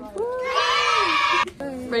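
A girl's high, drawn-out excited yell, about a second long, that cuts off about a second and a half in.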